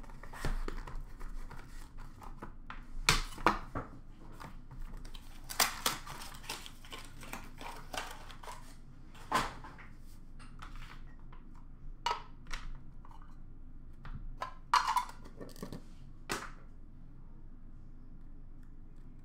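Cardboard boxes and card packaging being handled by hand: irregular rustling with scattered knocks and taps. The sounds thin out over the last second or so.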